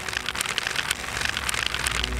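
Pages of a paper flipbook riffling under a thumb: a rapid run of small, crisp paper flicks.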